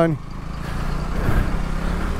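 Motorcycle engine running at low speed with road and wind noise, growing a little louder as the bike pulls alongside a heavy truck.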